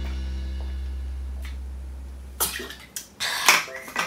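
A steady low hum that fades away over about three seconds. It is followed by a few short breathy noises as someone finishes drinking from a water bottle.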